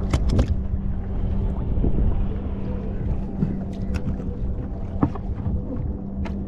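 Low rumble of wind and water on a small fishing boat, with a steady low hum under it. A freshly caught croaker flaps on the deck's plastic mesh mat, making a few sharp knocks: two right at the start, then more about four and five seconds in.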